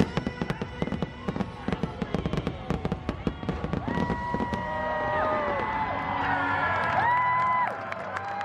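Fireworks going off in a dense, rapid string of pops and bangs, as in a show's finale. From about halfway, long held tones and voices rise over the bangs.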